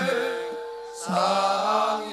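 Live traditional Javanese kuda lumping music: several voices chanting together. A held note fades away over the first second, then a new chanted phrase starts about a second in.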